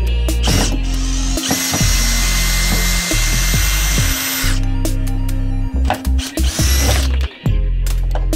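Music with a steady low beat, over which a cordless drill/driver runs with a steady motor whine for about three seconds, starting about a second and a half in, driving a screw into wood.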